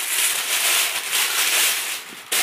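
Thin plastic bag crinkling and rustling as a new handbag is pulled out of it, stopping near the end.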